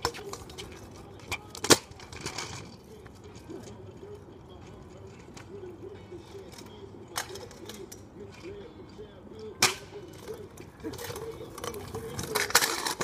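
Kick scooter knocking and clattering on pavement in a few sharp, separate cracks, the loudest just under two seconds in and another near ten seconds. Faint voices in between.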